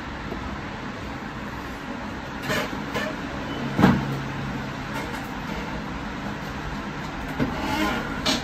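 Steady background rumble with a few short knocks, the loudest about four seconds in, followed by a brief low hum.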